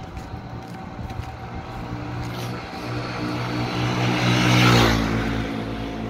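A motor vehicle passing by on the road. Its engine hum grows louder as it approaches, is loudest about four and a half seconds in, then drops in pitch as it goes past.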